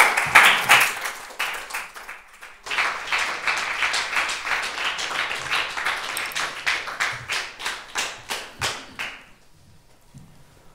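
Audience applauding, loudest at the start, with a short lull about two and a half seconds in, then steady clapping with single claps standing out, dying away about nine seconds in.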